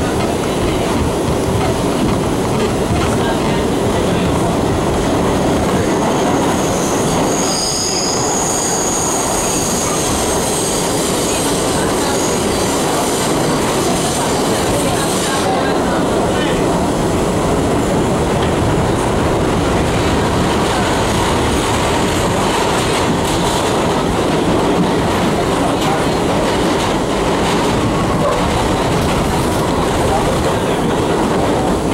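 Interior of a 1985 R62A subway car running through a tunnel: a steady, loud rumble of wheels on rail. A high squeal from the wheels rises over it from about 7 to 10 seconds in.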